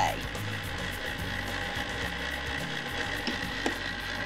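Electric ice cream maker's motor running steadily with its frozen barrel turning as raspberry sorbet mix is poured in, under background music.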